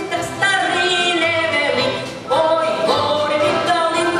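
A woman singing a Ukrainian folk song with folk band accompaniment. About two seconds in, the sound dips briefly before a new sung phrase slides up into its note.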